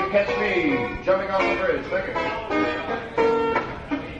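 Live band jam on a lo-fi tape recording: a saxophone plays a lead line with changing and sliding notes over guitar backing.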